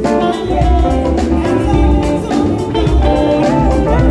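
A live band playing gospel highlife: an Epiphone Les Paul Special II electric guitar, played through a Fender combo amp, picks melodic lines over a deep bass guitar and a steady beat.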